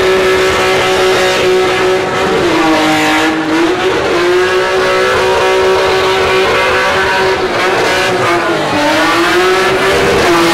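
A car drifting: its engine is held at high revs and its tyres squeal in one steady, loud note. The pitch sags and climbs back twice, about two and a half seconds in and again near the end.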